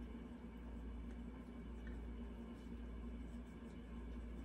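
Quiet room tone: a steady low hum with a few faint ticks, and no distinct sound from the thread being knotted.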